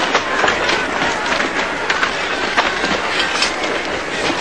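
Busy commotion: many irregular knocks and clatters over a steady rushing noise, with voices mixed in.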